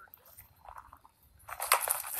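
Mostly quiet, then about a second and a half in a burst of sharp knocks and crunching from firewood being split with an axe.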